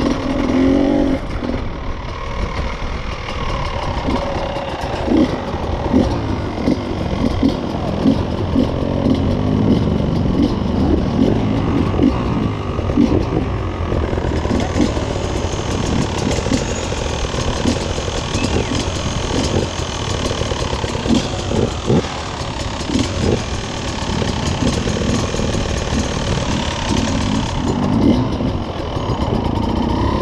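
Beta enduro motorcycle's engine running at low revs under light throttle, uneven, with many short blips, heard close from the rider's own bike.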